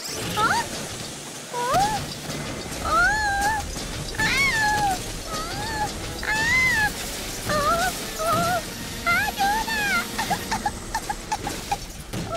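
An animated bus character's voice making a string of wordless sliding vocal sounds, rising and falling, with shorter quick ones near the end. Under them is the steady hiss and clatter of an automatic car wash's spray and brushes.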